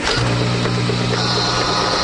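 NeoMatrix HALO breast pap test machine running: the steady electric hum of its suction pump, with a hiss joining about a second in.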